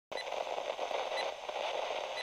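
Steady radio-style static hiss as an intro sound effect, with a faint short blip about once a second in step with a countdown.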